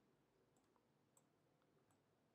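Near silence, with about four very faint computer-mouse clicks.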